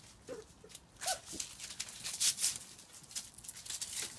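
Young border collie puppies giving a few short, high whimpers in the first second and a half, amid a scatter of rustling and clicking. The rustling and clicking is loudest in the middle.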